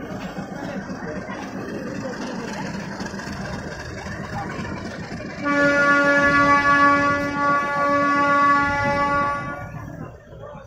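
Railway locomotive horn sounding one long steady blast of about four seconds, starting about halfway through, over the rumble of a moving train.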